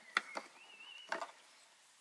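A few light clicks and taps: a small metal hinge being handled and set against a painted wooden cupboard panel.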